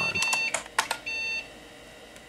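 A PC speaker beeping in a steady high tone, in short and longer beeps, as the Upsilon virus's random payload spews garbage characters to the screen; a few sharp clicks come about half a second in. The beeping stops a little past the middle, leaving a faint hum.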